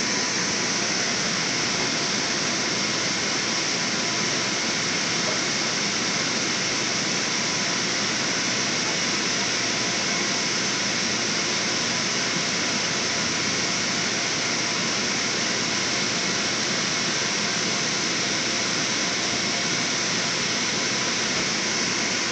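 Steady rushing of an electric blower fan running continuously to keep an inflatable slide inflated, with a faint steady hum in it.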